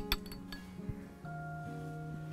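A spoon clinking against a stemmed glass: a few quick clinks at the start and one more about a second in, over soft background music with held notes.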